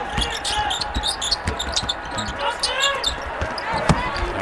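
A basketball being dribbled on a hardwood court: a quick series of bounces.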